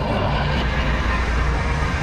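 Ventrac compact tractor's engine running steadily under load with its Tough Cut brush deck spinning, mowing through tall dry grass and brush close by.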